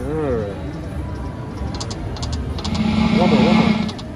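Konami Dynamite Dash video slot machine sounding as a new spin is played: a few short high electronic clicks, then a louder steady tone with hiss in the last second or so as the reels run and stop, over casino background voices.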